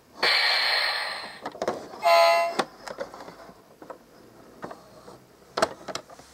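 Electronic sound effects from a toy bus's roof buttons: a hiss lasting about a second, then a short horn beep about two seconds in. Light plastic clicks and a knock follow.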